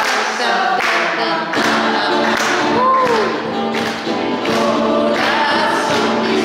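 A group of voices singing a worship song with musical accompaniment, kept in time by a steady beat of sharp strokes about every three-quarters of a second.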